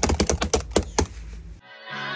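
A rapid run of sharp clicks, about ten a second, over a low hum. It cuts off suddenly, and a hip-hop beat with held synth chords starts near the end.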